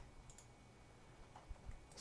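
Near silence: room tone with a few faint clicks of a computer mouse.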